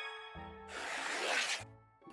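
A chime rings out and fades, then a brief hissing swish of about a second: a cartoon sound effect for a marker stroke crossing an item off a list.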